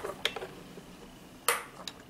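A few light clicks and taps as nail tools and a gel pot are handled on the work table; the sharpest comes about one and a half seconds in and rings briefly.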